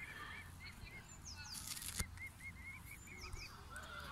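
Mute swan cygnets peeping softly: a steady string of short, high chirps several times a second, with a few thinner falling whistles above them. A single sharp click comes about halfway through.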